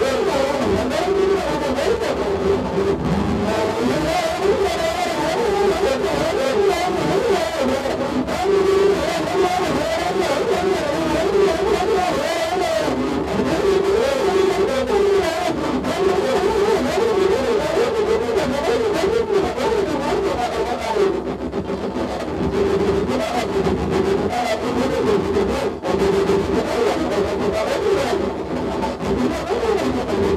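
Contact-miked pane of glass played with the mouth: a loud, continuous, distorted drone of wavering pitches, with brief dips about 21 and 26 seconds in.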